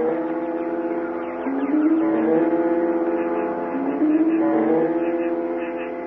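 A slow musical bridge of sustained notes, a low melody that holds each pitch for a second or two and steps up and down, marking a scene change.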